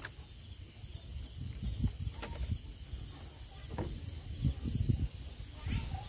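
Water sloshing and knocking in a plastic jar as pesticide powder is mixed and handled, in a run of irregular low thuds that grow busier toward the end. A steady high hiss of night insects underneath.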